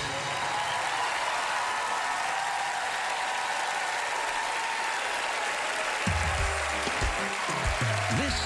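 Studio audience applauding, a dense even clatter of many hands. About six seconds in, bass-heavy music with low thumping beats comes in under it.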